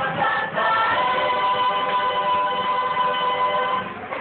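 A mixed group of voices singing together in harmony, settling about a second in on a long held chord that ends just before the close.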